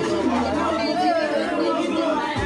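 Only speech: several people talking over one another in chatter.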